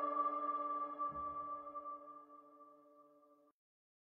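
A held chord of background music ringing out and fading away over about three seconds.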